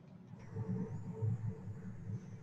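Faint, uneven low rumble of background noise with a faint hum, in a pause between spoken sentences.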